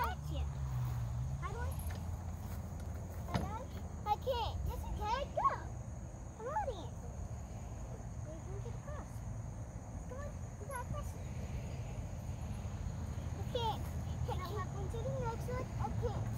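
Young children's voices: scattered short calls, squeals and babble without clear words, over a low steady outdoor rumble.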